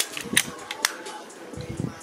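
A few short sharp clicks and light rustling from hands turning over a camera-mount shotgun microphone.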